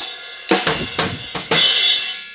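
Drum kit being played, with drum strokes about every half second. About one and a half seconds in, a cymbal is struck and rings out, fading as the playing stops.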